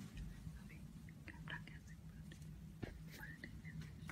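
Faint handling noise of a phone being carried and turned: soft clicks and rustles, one sharper click near the end, over a low steady hum, with faint whisper-like voice sounds.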